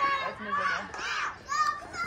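Voices of children and spectators calling out in short bursts across an open ball field.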